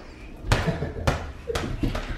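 Small inflatable play ball bouncing on a wooden floor, a few bounces about half a second apart.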